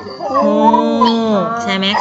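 A voice drawing out one long syllable for just over a second, level in pitch and then falling away, followed by a short spoken question near the end.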